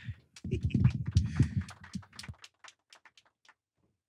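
Handling noise on a handheld microphone: low rubbing rumble with a run of small clicks that thin out and stop after about three and a half seconds.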